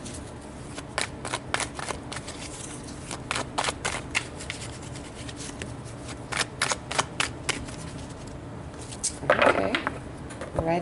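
A tarot deck being shuffled by hand: a long run of irregular crisp flicks and taps as the cards slip against each other. The flicks thin out after about seven seconds, and a louder sound that may be her voice comes in near the end.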